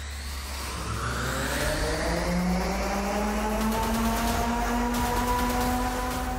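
Electric cyclorotor prototype spinning up: a whine with several overtones that rises in pitch over the first couple of seconds, then holds and climbs slowly over a steady low hum.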